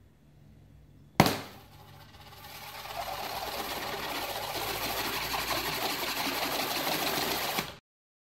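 A sharp knock, followed by a dense, fine rattling noise that builds over about a second, holds steady for about five seconds and then cuts off abruptly.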